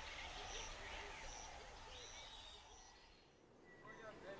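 Faint jungle wildlife ambience of repeated high bird chirps and other animal calls. It fades down to near silence about three seconds in, and a short high call follows just before the end.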